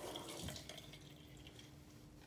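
Faint running water at a bathroom sink that falls away about half a second in, leaving soft dripping.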